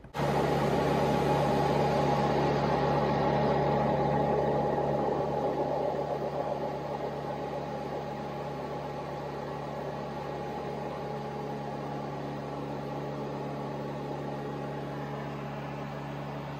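A light airplane's engine and propeller drone steadily, heard inside the cockpit; the sound gets quieter about six seconds in and stays lower.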